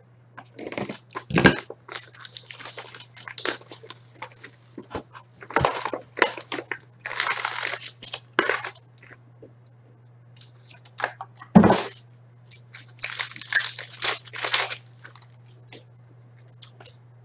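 Plastic shrink wrap being cut, torn and crumpled off a sealed cardboard trading-card box, then the box being opened and its wrapped contents pulled out. The rustling comes in irregular bursts, with a few sharper knocks from the box being handled, over a steady low hum.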